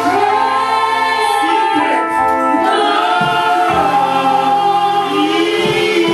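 A junior gospel choir of children's and women's voices singing together into handheld microphones, holding long notes.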